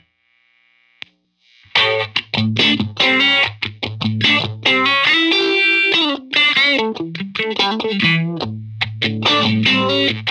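Strat-style electric guitar played through a Farm Pedals Fly Agaric four-stage phaser with both LFOs set to slow: picked notes and chords with a slow phase sweep. The first couple of seconds are near silent apart from a single click about a second in, and the playing starts just before two seconds.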